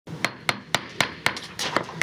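A gavel rapped repeatedly, a quick run of sharp knocks about four a second, calling the meeting to order.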